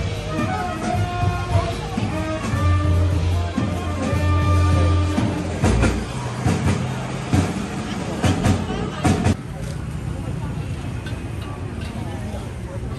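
A live jazz band playing over crowd chatter, with a strong bass line under the melody. The music cuts off about nine seconds in, giving way to the murmur of a crowd.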